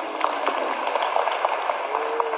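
A large audience applauding: a dense, steady patter of many hands clapping.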